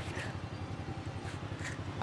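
Steady low hum of motorbike and street traffic, with a few faint short scrapes of a knife shaving the husk of a young coconut, one near the start and two more about a second and a half in.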